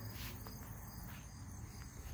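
Faint, steady background chirring of crickets, an unbroken high-pitched insect chorus.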